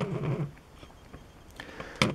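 A short low murmur from a man's voice in the first half second, falling in pitch like a hesitant 'uhh'. Then low room noise with a few faint clicks.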